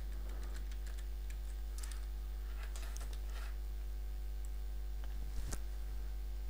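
Faint computer-keyboard keystrokes, a few scattered taps in the first half and a single sharper click near the end, over a steady low electrical hum.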